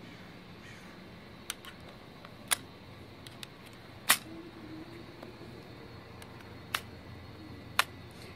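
Electric scooter's brake lever and throttle being pressed and snapping back, giving about five sharp separate clicks spread over several seconds. They spring back freely, no longer sticking, now that the handle grips have been pulled outward to make a gap.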